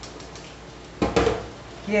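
A metal spoon clattering once, briefly, about a second in, as it is set down into a stainless-steel kitchen sink.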